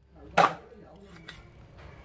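A cleaver chopping skin-on pork leg on a thick round wooden chopping board: one heavy, sharp chop about half a second in, followed by two faint knocks.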